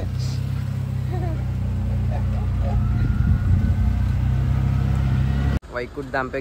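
Auto-rickshaw engine running steadily as it drives, heard from inside the open cabin, with faint voices in the background. It cuts off suddenly near the end.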